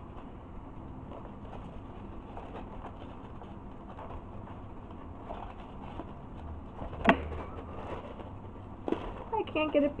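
Quiet handling of white foam packaging blocks, with faint rubbing and one sharp knock about seven seconds in and a smaller one near nine seconds.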